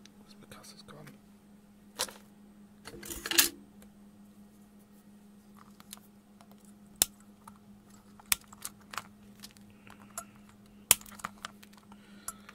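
Handling noise from a small electronics circuit board on a cutting mat: scattered sharp clicks and light taps, a few close together about three seconds in and then single ones a second or more apart, over a faint steady hum.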